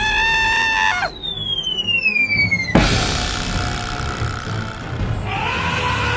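Cartoon sound effects: a short high-pitched squeal, then a falling whistle that slides down for nearly two seconds and ends in a sharp thud as the animated crocodile hits the ground. A brief rising-and-falling whine comes near the end, over background music with drums.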